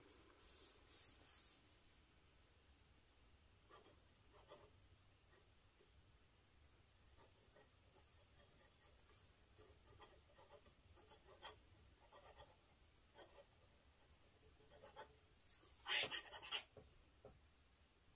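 Stainless steel medium #6 Bock nib of a Kilk Camera Laterna fountain pen writing on paper: faint scratching of the pen strokes, with a few louder quick strokes near the end.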